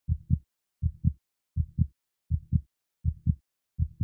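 Heartbeat sound effect: a steady lub-dub double thump, about 80 beats a minute, low and dull, with dead silence between beats.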